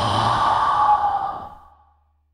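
A man's long, breathy sigh close to the microphone, fading away to nothing about a second and a half in.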